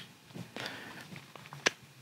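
Faint handling sounds of a GoPro Hero 10 and its Max Lens Mod being lined up by hand: a few light ticks, with one sharper click about a second and a half in.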